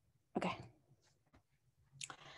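A single short utterance from one person, a brief spoken 'okay' about a third of a second in, followed by a couple of faint clicks.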